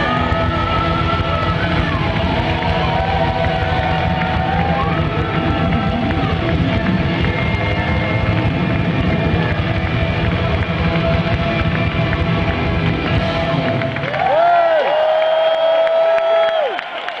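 Live rock band with orchestra playing: a lead electric guitar with bent notes over a steady drum beat. About two seconds before the end the drums stop and a final long note is held, wavering slightly.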